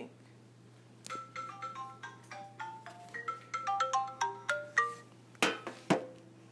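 A phone ringtone: a quick melody of short, bell-like notes, followed near the end by two sharp knocks.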